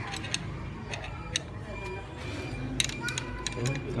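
Light, irregular metallic clicks and taps, about a dozen, from a screwdriver tip knocking against the motorcycle's clutch hub and lock nut, with two sharper taps.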